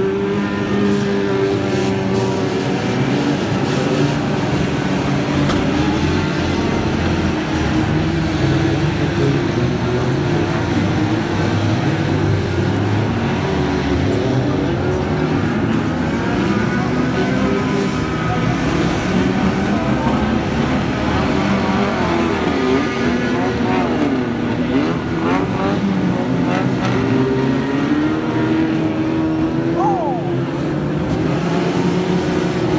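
Engines of several 1500cc banger-racing cars running together, their pitches rising and falling over and under one another as the cars accelerate and back off.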